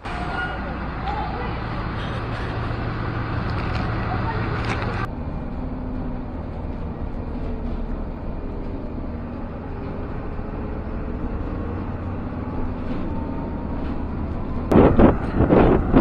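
Riding inside a moving city bus: the engine runs with a steady low drone under road noise, with faint rising and falling whines. The sound changes abruptly about five seconds in.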